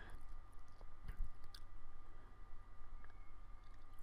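Quiet background: a steady low hum with a few faint clicks and a soft knock about a second in.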